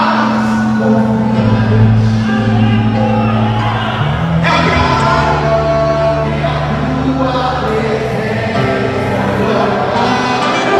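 Live gospel worship music: a man singing into a microphone over a band, with long held bass notes under the melody.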